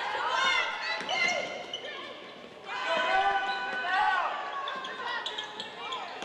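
Live basketball game sound in a large gym: the ball dribbling on the hardwood and sneakers squeaking, with players' and coaches' voices calling out.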